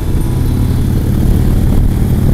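Harley-Davidson touring motorcycle's V-twin engine running steadily at motorway cruising speed, a low even drone with wind and road noise over it.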